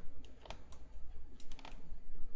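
Light clicks from computer controls being worked: three spaced clicks in the first second, then a quick run of four about a second and a half in, over a low steady hum.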